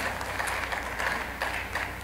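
Light, scattered applause and crowd noise from a conference audience over a low steady hum, re-recorded from a live stream's playback.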